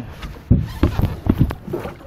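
Irregular knocks and thumps in a small boat as a big rainbow trout is brought in at the net, about half a dozen hits over a second or so.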